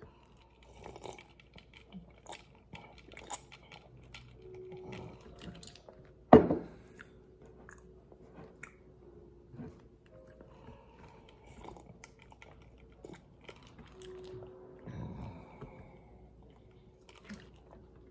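A person sipping and swallowing a drink from a clear plastic cup: soft mouth sounds and swallows with many small clicks, and one louder sharp knock about six seconds in.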